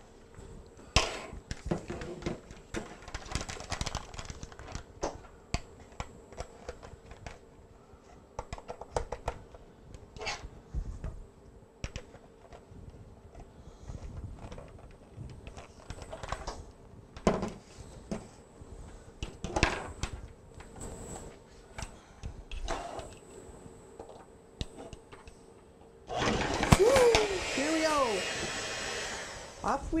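Clicks and knocks of an electric hand mixer and its beaters being handled, then near the end the mixer's motor runs loudly for about three seconds, its pitch wavering.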